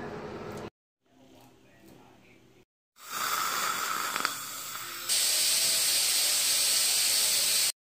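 Dental cleaning instruments hissing in a patient's mouth during a teeth cleaning, with a saliva ejector in place. A steady hiss with a faint whistle starts about three seconds in. A louder, brighter hiss follows for the last few seconds and stops abruptly.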